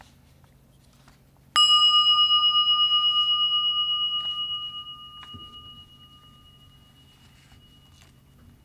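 A bell struck once about a second and a half in, ringing with a clear, slowly wavering tone that fades away over about four seconds.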